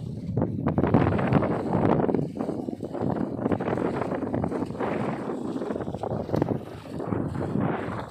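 Wind buffeting the microphone in uneven gusts.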